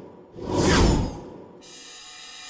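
TV graphics bumper sound: a loud whoosh sweeping down in pitch, then, about one and a half seconds in, a held musical chord that rings on.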